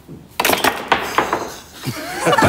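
Pool cue striking the cue ball about a third of a second in, followed by a quick run of sharp clacks and knocks as the balls hit one another and drop into the pocket, fading away over about a second.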